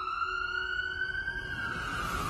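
A siren wailing: one long tone that rises, holds, then slowly falls away.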